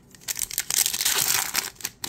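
Foil wrapper of a Topps baseball card pack crinkling and tearing as the pack is ripped open. The crackle starts about a third of a second in and lasts a little over a second.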